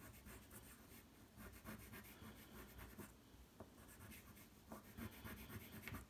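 Blue block crayon rubbed on paper in quick, repeated shading strokes: a faint, scratchy rubbing.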